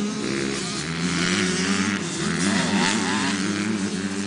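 85cc two-stroke motocross bike engine revving hard, its pitch climbing and dropping several times as the rider works the throttle.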